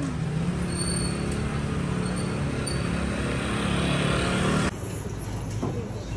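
Street traffic noise with a motor vehicle's engine running steadily. It cuts off abruptly near the end, giving way to a quieter room background.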